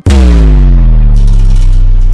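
A loud, deep cinematic boom sound effect for a logo transition: it hits suddenly, then a cluster of tones slides downward under a hiss and a heavy low rumble that holds steady.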